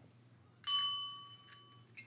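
A chrome desk service bell struck once: a single bright ding about half a second in that rings out and fades over about a second. It is rung to mark the close of a topic.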